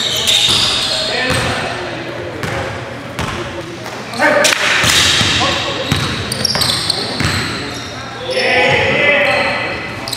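A basketball game in a gymnasium: the ball bouncing on the hardwood court and players calling out to each other, echoing in the hall. The voices are loudest about four seconds in and again near the end.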